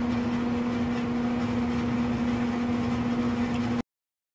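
A steady machine hum at one constant low pitch over background noise, cutting off abruptly near the end.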